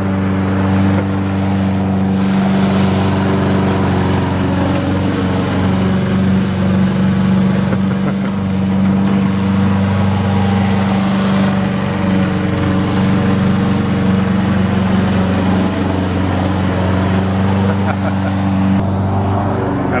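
Honda self-propelled walk-behind lawn mower's single-cylinder four-stroke engine running steadily while cutting grass, a loud, constant drone at one speed.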